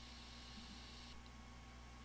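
Near silence: a faint steady electrical hum with hiss, the higher part of the hiss dropping away about a second in.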